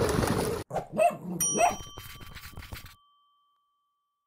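Pool-cleaning robot churning water briefly, then cut off abruptly; an end-screen sound effect follows: two short cartoon dog barks and a bell-like ding that rings on and fades.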